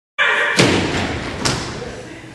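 Two heavy thuds about a second apart, the first louder, each ringing on briefly, after a short snatch of voice at the start.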